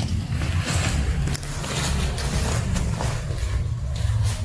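Nylon fabric of a pop-up cat play tunnel rustling and crinkling in irregular scratches as a cat paws and scrambles at it, over a steady low rumble.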